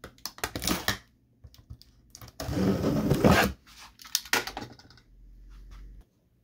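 Metal box cutter slitting the packing tape along the seam of a cardboard box, with scattered clicks and scrapes and one longer ripping run about two and a half seconds in.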